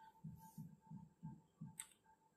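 Near silence: a faint low hum pulsing about three times a second, with a brief soft hiss near the end.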